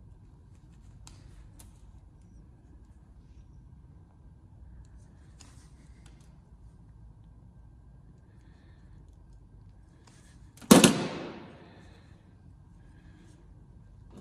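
Faint clicks from a hand tool being worked on wiring, then one loud, sharp clack about eleven seconds in with a short ringing tail.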